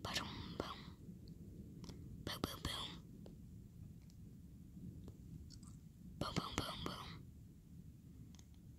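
A person whispering close to the microphone in three short bursts, with small mouth clicks, over a steady low background noise.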